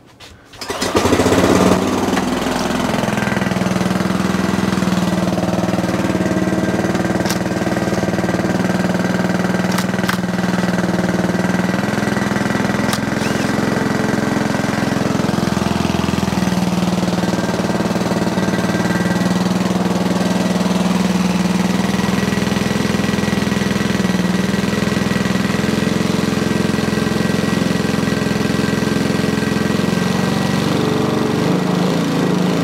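Petrol lawnmower engine pull-started about a second in, then running steadily at one even speed, not revving as high as it should.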